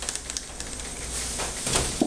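Icing spatula scraping whipped-cream frosting, a soft swishing scrape strongest near the end, over a steady low hum.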